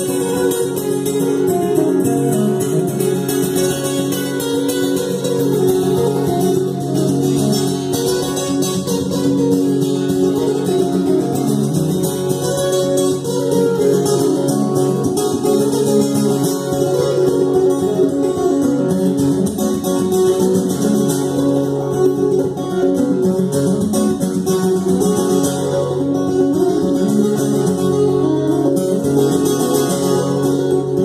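Solo acoustic-electric guitar playing live, an unbroken run of notes and chords with no singing.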